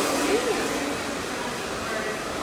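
Handheld hair dryer blowing steadily, easing off a little in level, with faint talk early on.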